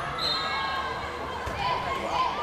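Girls' volleyball rally in a reverberant sports hall: players shouting calls, with one sharp thud of the volleyball being played about one and a half seconds in.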